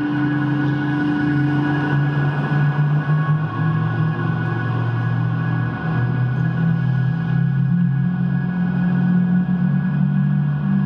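Electric guitar through effects pedals playing a dark, sustained ambient drone. Low held tones shift to new pitches every few seconds and climb near the end, under steady higher ringing tones.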